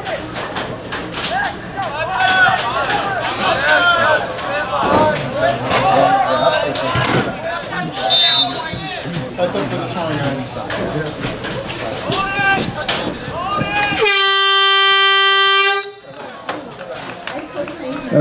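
A game horn sounds one steady blast of about two seconds near the end, signalling the end of the first half. Before it, voices call out across the field.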